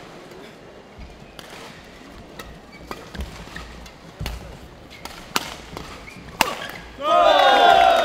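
Badminton doubles rally: a shuttlecock struck back and forth by rackets, sharp single hits at uneven intervals. About seven seconds in, many voices burst out at once in loud shouts and cheers from the crowd as the rally ends.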